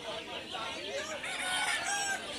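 Rooster crowing among clucking chickens, with a run of short, high-pitched calls near the end.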